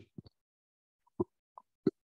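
About five short, separate pops: two in quick succession just after the start, then single ones at roughly half-second intervals in the second half.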